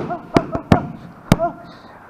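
Boxing gloves hitting focus mitts: a quick combination of three sharp slaps about a third of a second in, then a single harder slap a little over a second in, with a voice between the hits.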